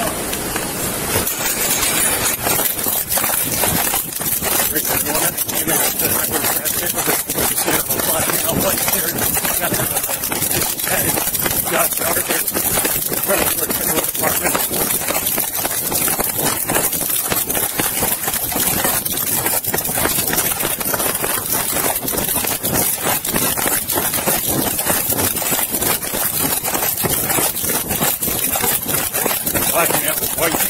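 Body-worn camera jostled during a foot chase: a continuous clatter of rubbing and jolts from running, over a steady hiss.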